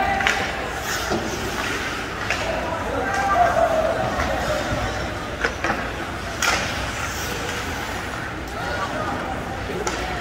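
Spectators' voices calling out in an echoing indoor ice rink during play, with several sharp clacks of hockey sticks and puck scattered through, the loudest about six and a half seconds in.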